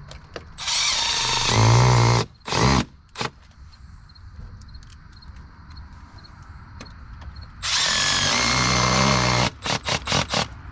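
Cordless drill driving mounting screws for an electrical disconnect box into a house wall. There are two runs of about a second and a half each, the first followed by a couple of short trigger bursts, and a few more short bursts near the end.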